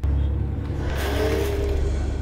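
Wheezing breath of a horror-film monster, swelling into a breathy hiss about a second in, over a deep, steady low rumble.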